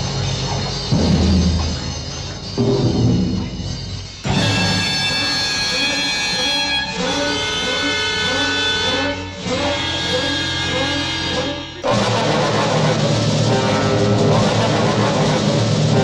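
Film score music that changes abruptly between sections: low drum strikes in the first few seconds, then a bright sustained passage carrying a short repeating figure of notes, switching to a fuller, denser section about three quarters of the way through.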